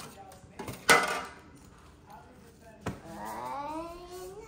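A sharp knock about a second in and a smaller click near three seconds as a pizza cutter is handled at a stone counter. A drawn-out, slowly rising voice sound follows near the end.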